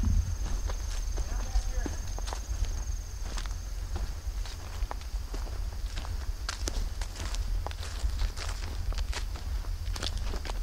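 Footsteps of someone walking across grass and fallen leaves, with wind rumbling on the microphone. A steady high whine runs through the first few seconds, then fades out.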